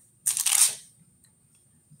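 A single short rustle of paper, a book page being turned, lasting about half a second, a quarter second in.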